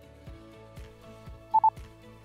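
Two short beeps in quick succession about one and a half seconds in, from a Zoom Essential Series handheld recorder's guide-sound system, the tone it gives when a recording is stopped. Soft background music with a steady beat runs underneath.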